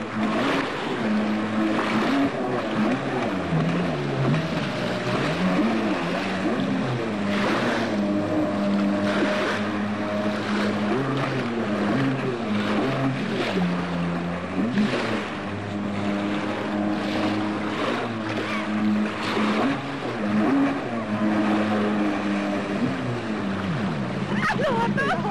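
Jet ski engine running on the water, its pitch dropping and climbing again several times as the throttle is eased and opened, over a rush of water and spray.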